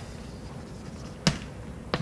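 Chalk writing on a blackboard: quiet room tone with two short, sharp knocks of the chalk on the board, the louder a little over a second in and a lighter one near the end.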